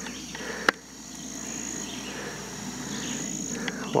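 Steady high-pitched chorus of summer insects, with one sharp click about three quarters of a second in.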